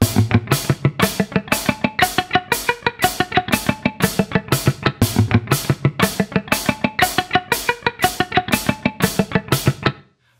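Electric guitar alternate-picked in a steady, even run of notes crossing the strings, the picking pattern of three-note-per-string scales, over a drum beat. The playing stops abruptly just before the end.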